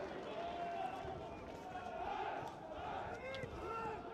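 Live football match ambience: faint, scattered shouts and calls from players and spectators over a steady low background hum of the ground.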